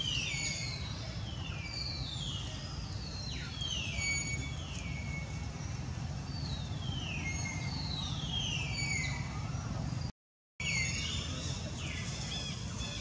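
A series of high-pitched animal calls, each sliding downward in pitch, repeated about once every second or so over a low steady background hum; the sound cuts out briefly near the end.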